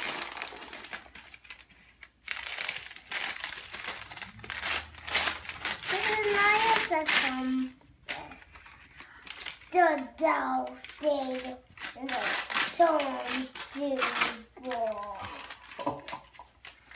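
Gift wrap crinkling and rustling in a small child's hands as he unwraps a present, busiest over the first several seconds. A child's voice comes in partway through and again near the end.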